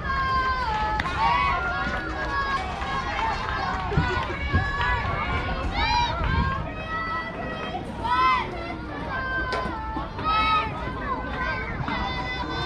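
Several high-pitched voices calling and cheering at a youth softball game, overlapping, with loud drawn-out shouts about six, eight and ten seconds in.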